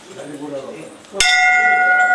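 A temple bell struck once, just over halfway through, then ringing on with several clear, steady tones. A low murmur of voices comes before the strike.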